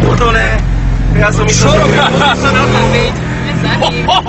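Car engine and road noise heard from inside the cabin, the engine's pitch rising between about one and three seconds in as the car speeds up, under loud talking.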